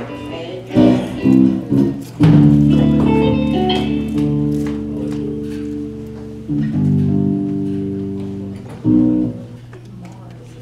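Live gospel church band playing instrumental music: a few short chord hits, then two long held chords over a bass line, and another short hit near the end.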